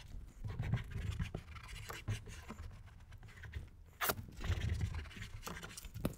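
Microfiber towel wiping leather-cleaner residue off a leather car seat: several scratchy rubbing strokes of cloth on leather, with one short sharp sound about four seconds in.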